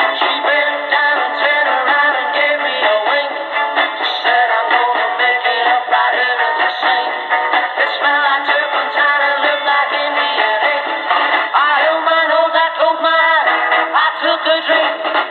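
A song with singing, played through the small loudspeaker of a Tecsun 2P3 kit AM radio tuned to CFZM 740 AM. The sound is thin and narrow, with no deep bass and nothing above about 4 kHz, as AM broadcast reception sounds.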